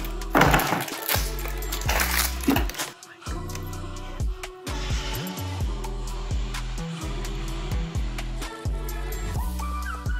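Background music with a steady beat and deep bass notes.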